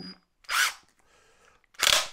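Hilti SIW 22T-A cordless impact wrench fired in two short bursts, about half a second in and near the end, its impact mechanism rattling while a hand grips the long socket and holds it against the tool's torque.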